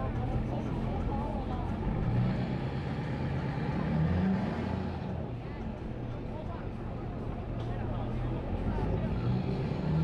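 Ford pickup truck engine revving in surges as its rear wheels spin without traction on the boat ramp, the pitch rising about two seconds in and again near four seconds.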